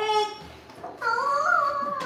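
A young girl's wordless vocalizing. A short voiced sound at the start is followed, about a second in, by a long, high-pitched squeal that rises a little and then dips.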